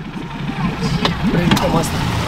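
Suzuki outboard motor idling steadily just after being started, a low even hum under voices.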